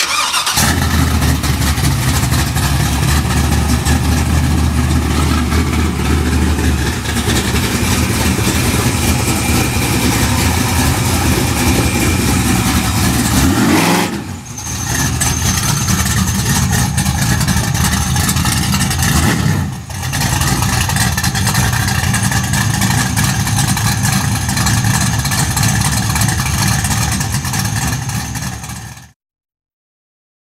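A 421 cubic-inch stroker LS V8 in a 1975 Buick LeSabre starts up and runs loud. About halfway through it revs with a rising pitch, then it keeps running until the sound cuts off just before the end.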